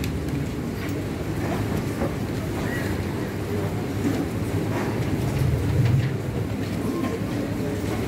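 A steady low rumble of background noise that swells briefly near the end, with faint scratches of a marker writing on a whiteboard.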